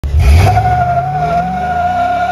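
A 4.8 LS-swapped 1979 Oldsmobile Cutlass launching at full throttle. The rear tyre spins with a steady high squeal over the V8, whose revs climb. It is loudest about a half second in.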